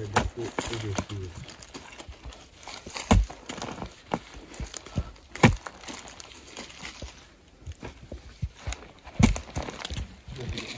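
A long-handled wooden digging tool chopping into loose soil in irregular strikes a few seconds apart, the loudest about three, five and nine seconds in, with earth and dry leaves rustling between them.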